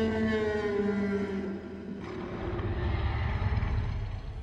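Tyrannosaurus rex roar from the film's sound design: one long cry falling slowly in pitch over about two seconds, then a low rumble.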